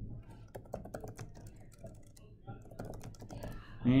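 Typing on a computer keyboard: a quiet run of key clicks at an uneven pace.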